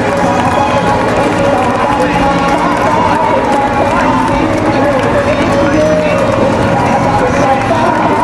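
A dense, steady babble of many voices talking over one another.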